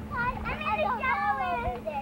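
Children's high-pitched voices calling out and squealing while playing in a swimming pool, with no clear words. A steady low hum sits underneath.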